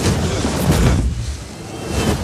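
A deep, rumbling boom with a loud rushing burst a little under a second in, then dying down.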